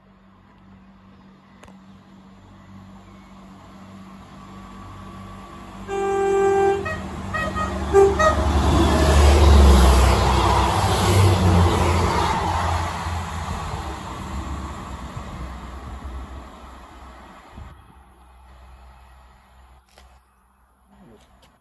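Passenger diesel multiple unit sounding its horn as it approaches, with one blast about six seconds in and a shorter one about two seconds later. It then runs through the station at speed with a loud rumble that builds and fades as it passes.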